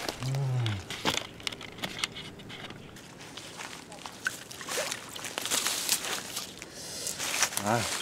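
A short vocal exclamation just after the start, then scattered rustles, crackles and small clicks of water hyacinth and dry stems as a hooked carp is drawn in to the bank.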